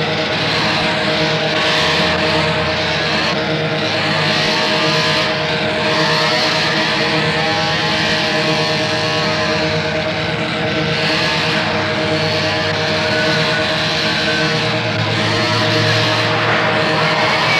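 Chainsaw-like revving sample running steadily in a dark psytrance track, over a held droning pitch.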